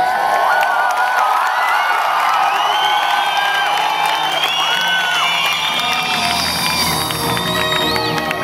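Concert crowd cheering and whooping, with many separate high shouts rising and falling. About five and a half seconds in, low held notes of music begin under the cheers as the set opens.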